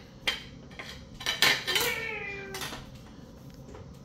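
A table knife and plate clinking and knocking on a countertop: a few sharp clicks, the loudest about a second and a half in.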